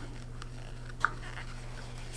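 Quiet room with a steady low hum, and faint tissue rustles and small clicks as a tissue wipes lipstick off the lips, one sharper little click about a second in.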